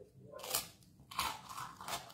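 A person biting into and chewing a thick piece of bread, heard as a few short bites and chews.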